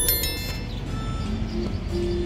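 Background music with a bright bell-like ding right at the start, fading within about half a second. This is the sound effect of an on-screen subscribe-bell animation.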